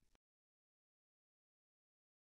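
Near silence: a gap with no sound at all.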